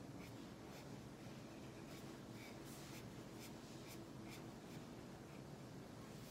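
Felt-tip marker scratching on paper in short colouring strokes, a faint scratch about twice a second. The marker is a water-based dual-tip felt pen filling in an area with ink.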